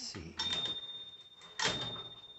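Tower President XII (a rebadged Smith Corona) manual typewriter: the carriage is pushed along by the return lever with sharp clacks, and the margin bell rings about half a second in, one clear tone that rings on. The bell is in good working order and sounds great.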